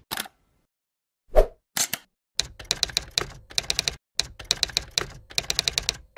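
Typewriter-style key-click sound effect: after a single low thump about a second and a half in, quick runs of sharp typing clicks come in several bursts with short pauses between them.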